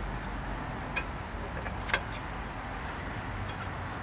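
A few light metallic clicks as a new front brake pad's tabs are worked into the caliper bracket, the sharpest about two seconds in, over a steady low background hum.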